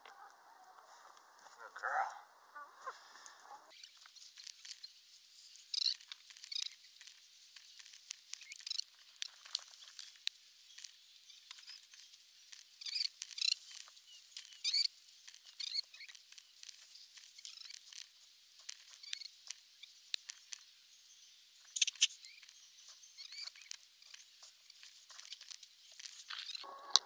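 A chicken foraging in dry pine straw and loose dug-up soil: faint, scattered rustles and sharp little ticks of scratching and pecking.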